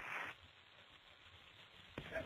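Near silence: a faint, even hiss on the recorded air traffic control radio audio, with no transmission.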